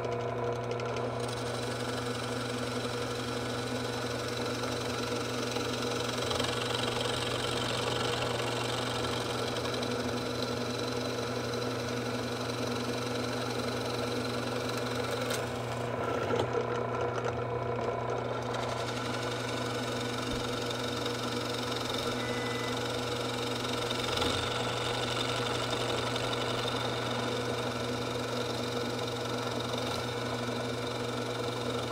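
Drill press motor running steadily as a Forstner bit bores into a wooden block, a constant hum with a single sharp click about halfway through.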